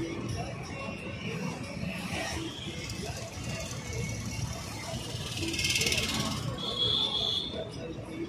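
Steady low road rumble of a moving car heard from inside, with indistinct voices. About five and a half seconds in there is a brief hiss, followed by a short, steady high-pitched tone lasting about a second.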